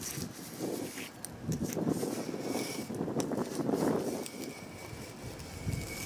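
Knife blade scraping dirt residue off an RV's side wall, in a few slow scraping strokes that swell and fade.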